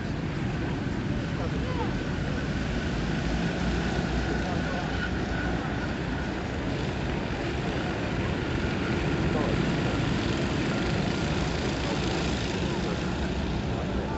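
Engines of a pack of racing go-karts running on track, a continuous buzzing with engine notes rising and falling as the karts accelerate and pass.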